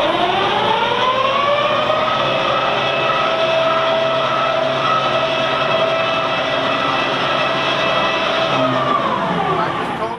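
Electric drive of a phased-array weather radar turning its rotating top, which carries about 20 tons. It makes a whine of several tones that climbs in pitch over the first couple of seconds as it speeds up, holds steady, then drops in pitch near the end as it slows.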